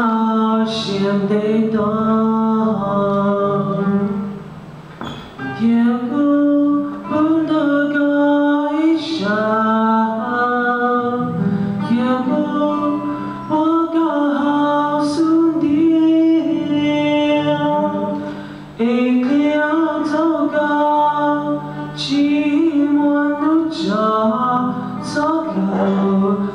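Male singer singing a ballad into a microphone, accompanied by an acoustic guitar, with short breaks between vocal phrases about four seconds in and again near eighteen seconds.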